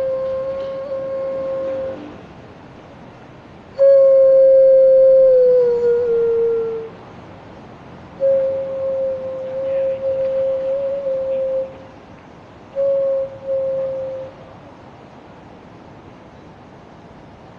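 Xun, the Chinese clay vessel flute, playing slow held notes around one pitch in four phrases. The second phrase is the loudest and slides down in pitch near its end; the last is short.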